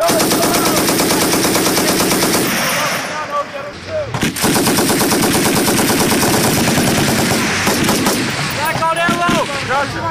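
Machine guns firing sustained automatic bursts, letting up briefly about three seconds in before resuming.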